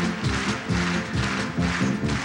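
Upbeat pop music in an instrumental passage between sung verses, with a steady bouncing beat and bass.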